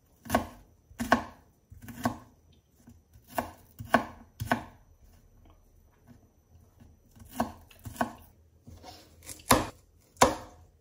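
Chef's knife chopping red onion on a wooden cutting board, about nine slow, separate chops. They come in two runs with a pause of about two seconds in the middle.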